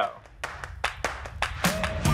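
A quick run of sharp claps, about half a dozen in a second and a half, then background music with a bass line comes in near the end.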